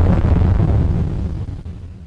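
The closing tail of an electronic breaks track: a low, noisy rumble with a hiss above it, fading out steadily.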